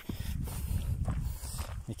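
Footsteps on a rocky dirt trail under a steady low rumble.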